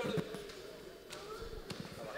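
A few dull low thumps on a wooden stage floor, under faint voices.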